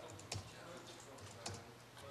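Faint typing on a laptop keyboard: scattered key clicks, two of them louder, about a third of a second in and about three quarters of the way through.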